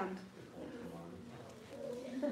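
A quiet pause with a few faint, brief murmured voices from the audience.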